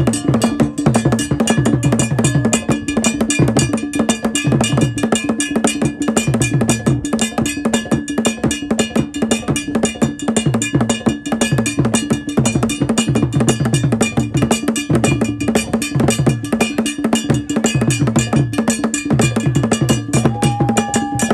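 Traditional Ghanaian drum ensemble playing a fast, steady rhythm: drums beaten with curved sticks, with runs of low drum tones under a ringing bell.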